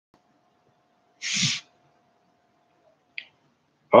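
A short breathy vocal sound from a man, like a sneeze or cough, about a second in, then a single faint click. A faint steady tone runs under the first three seconds.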